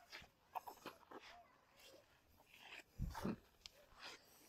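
Quiet, scattered scuffs and taps of footsteps on stone steps, with a louder low thud about three seconds in and a short 'hmm' of effort right after it.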